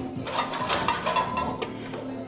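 A few light metallic clinks as the loaded barbell and its weight plates shift while the lifter grips the bar before a deadlift, over background music.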